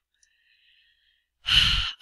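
A woman's sharp breath drawn close to the microphone, about half a second long near the end, after a near-silent pause.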